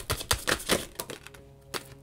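A tarot deck being shuffled by hand: a rapid run of crisp card clicks for about a second, then a single click near the end as a card is laid down.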